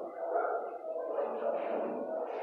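Dogs barking in an animal shelter's kennels, a continuous background din.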